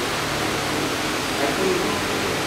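Steady hiss of the hall's room tone, with a low steady hum under it.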